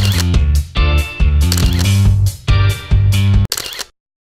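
Outro music with a heavy bass line and sharp percussive hits in a steady beat, cutting off abruptly just before the end.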